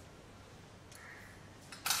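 Quiet room tone, with a faint short sound about a second in and one short, sharp hissing click near the end.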